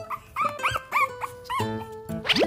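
An 18-day-old Shiba Inu puppy makes a quick run of about five short, high yips, each rising and then falling in pitch.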